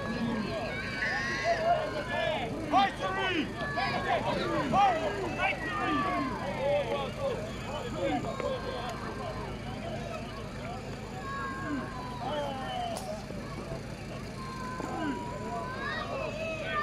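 A crowd of spectators shouting and calling out over one another, busiest and loudest in the first few seconds and thinning later, over a low steady hum.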